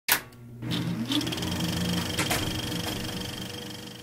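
Intro sound effect: a sharp hit at the very start, then a sustained low drone with a rising tone and a few clicks, fading away near the end.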